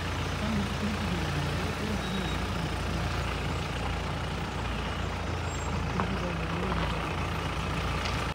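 Vehicle engine idling with a steady low rumble, heard from inside the vehicle, with indistinct voices in the background.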